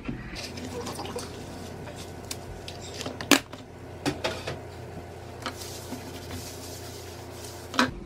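A disinfecting wipe pulled from a plastic wipes canister, with a few sharp plastic clicks and knocks from the canister's snap lid, the loudest about three seconds in, then the soft rubbing of the wipe scrubbing the tabletop.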